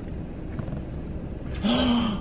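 A man's sharp, voiced gasp of dismay about one and a half seconds in, over a low steady rumble; the gasp is his shock at finding bird droppings on his car.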